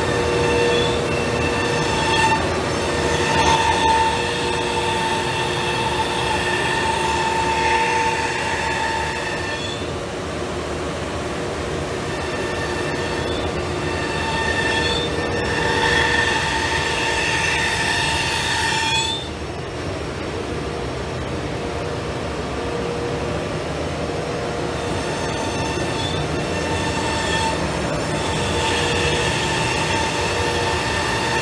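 CNC router spindle cutting sheet stock: a steady high whine with several overtones over a rush of noise. The whine fades out briefly about ten seconds in, comes back, then cuts off about two-thirds of the way through and returns near the end.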